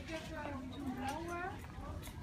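A faint, higher-pitched voice in the background, its pitch gliding up and down in a few short phrases, over low steady shop noise.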